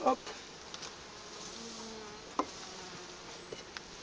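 Honeybee colony humming steadily in an open hive, with a few sharp clicks of a metal hive tool on the wooden frames, one loudest about halfway through and a couple more near the end.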